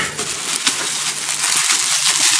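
Plastic bubble wrap crinkling and crackling as hands pull it out of a cardboard shipping box.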